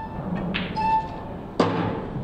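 Electronic pool shot-clock beeping about once a second as the clock runs down, a warning that time for the shot is nearly up. A sharp knock comes about half a second in, likely the cue striking the cue ball to pot the eight ball, and a louder noisy burst follows near the end.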